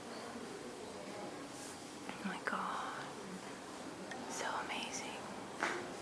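Quiet voices whispering and murmuring a few times over a steady low hiss of room tone.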